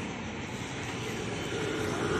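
A motorcycle engine running close by as it stands stopped, over the steady noise of passing street traffic.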